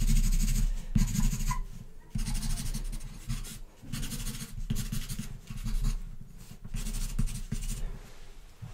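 Black charcoal pencil hatching quickly on toned paper, pressed hard to lay in a strong dark. The rapid scratching strokes come in runs, with brief pauses about two and four seconds in.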